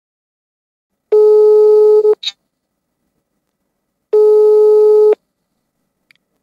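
Telephone ringback tone while an outgoing call rings unanswered: two steady, even tones about a second long each, three seconds apart, with a faint click just after the first.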